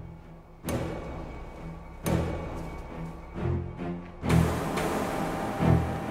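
Tense dramatic soundtrack music with sudden deep drum strikes, about a second in, at two seconds and just after four seconds, the last the strongest.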